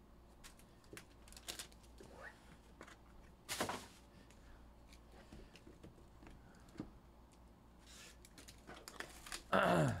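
Faint handling noise of a hard plastic graded-card slab and a cardboard trading-card box on a table: scattered small clicks and rustles, with one short louder scrape about three and a half seconds in. A throat-clear near the end.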